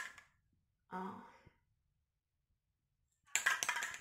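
A spray paint can being handled: a quick, dense run of clicks and knocks near the end, after a spoken 'oh' and a stretch of near silence.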